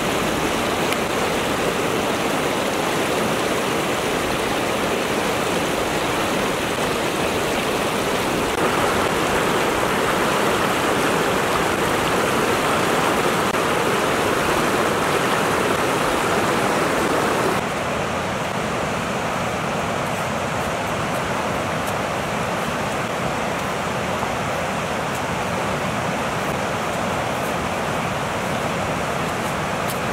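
Fast mountain river rushing over rocks and through rapids: a steady rush of water. Its tone changes abruptly about nine seconds in and again near eighteen seconds in.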